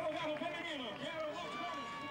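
Indistinct talking: a voice speaking, with no clear words.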